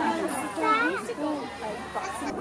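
Young children's high voices and adults talking and calling out, mixed chatter of a small group.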